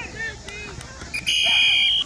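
A referee's whistle blown in one long, shrill blast a little past halfway, lasting nearly a second and stepping up slightly in pitch just after it starts, ending the play. Before it, scattered shouts from players and onlookers.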